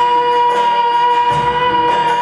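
Live band music for a Hindi Christian worship song: one long held note over keyboard and acoustic guitar, with a low drum hit a little over a second in.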